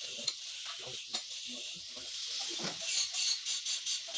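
Paintbrush bristles scrubbing paint onto a wooden frame: a steady scratchy hiss, then quick back-and-forth brush strokes, about five a second, over the last second or so.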